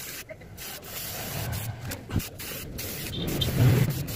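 Aerosol spray-paint can spraying in short hissing bursts with brief breaks between them, painting the tyre lettering. A low rumble rises under it near the end.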